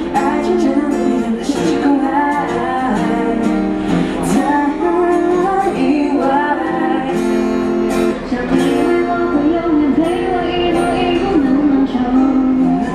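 A woman singing a pop song through a microphone, accompanied by strummed acoustic guitar.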